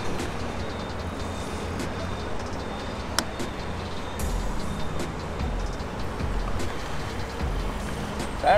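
Steady rumble of road traffic, with one sharp click about three seconds in as the licence plate is pressed into its plastic bracket.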